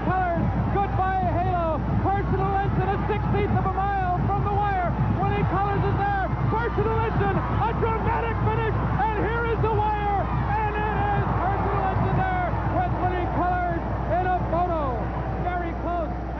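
Racetrack crowd cheering and yelling, many voices at once, continuous and loud through the stretch drive of a horse race.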